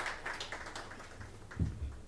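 A few scattered hand claps trailing off, then a single dull low thump about a second and a half in.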